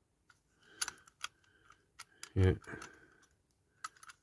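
Scattered light clicks and taps of a Corgi Toys die-cast Volkswagen van being handled and turned over in the fingers.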